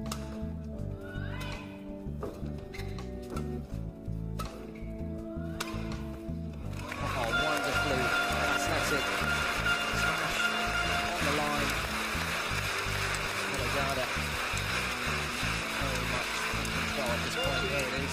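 Badminton rally: several sharp racket hits on the shuttlecock, a second or so apart, over steady low background music. About seven seconds in, the arena crowd breaks into loud applause and cheering as the point is won, and this carries on with the music.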